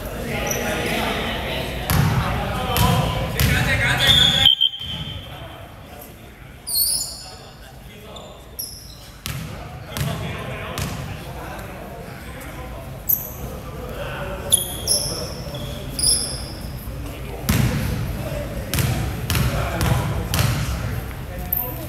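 Basketball bouncing on a hardwood court with sneakers squeaking in short high-pitched chirps. Players' voices carry in the echoing sports hall, loudest in the first few seconds.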